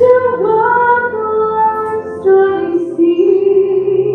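A woman singing a slow hymn solo, in long held notes that step and glide between pitches, over a steady low accompaniment.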